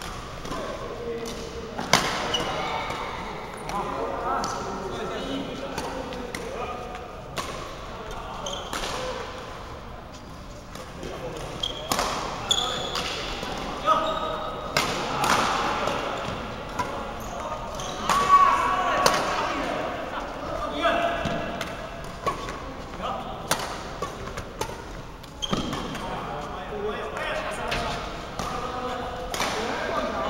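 Badminton rally: sharp, irregular hits of rackets on a shuttlecock, a second or a few apart, mixed with voices.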